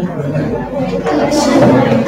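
Several voices chattering over one another: students talking among themselves.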